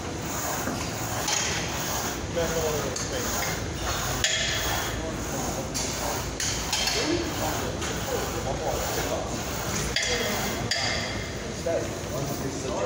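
Gym noise: a steady background din with scattered metallic knocks and clinks from a loaded plate leg press machine and its weight plates, and faint voices.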